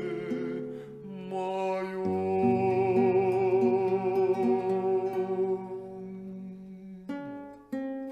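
Instrumental music: a violin holds a long melody note with vibrato over a sustained accompaniment, then plucked guitar chords come in about seven seconds in.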